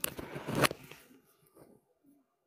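Handling noise on a phone's microphone rig: rustling and clicks, with one sharp click about two-thirds of a second in, then dying away to almost nothing.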